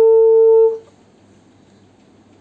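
Saxophone holding one long, steady note that stops about three-quarters of a second in, leaving quiet room tone.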